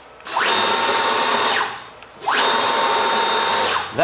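CNC plasma table's gantry drive motors jogging the gantry at maximum hand speed, twice: each run is a whine that rises in pitch as it speeds up, holds steady for about a second, then falls away as it slows to a stop.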